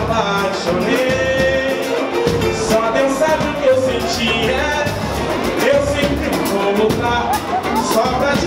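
A pagode band playing live, with a male lead voice singing held, wavering melodic lines over steady samba percussion.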